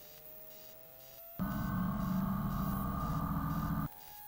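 Engine and cabin noise of a Van's RV-12 on its takeoff roll. It starts faint, with a thin tone slowly rising in pitch. About a second and a half in, a loud, steady engine drone with a high whine cuts in suddenly, then cuts out just as suddenly near the end.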